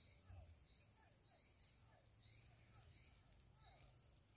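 Near silence: faint outdoor ambience of a steady high insect drone with soft, short chirps repeating a few times a second.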